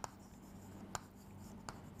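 Chalk writing on a blackboard, faint: a few light taps and short strokes, with small clicks about a second apart.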